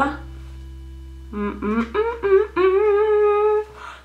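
A woman humming a few notes with her lips closed, pressed together on a paper tissue to blot her lipstick. The notes are held and slide gently, starting a little over a second in and stopping just before the end.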